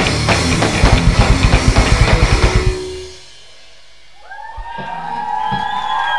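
Live rock band with drum kit and electric guitars playing a fast, hard-hitting passage that stops abruptly about three seconds in. After a brief lull, long held high tones swell up and ring with slight bends, typical of electric guitar feedback.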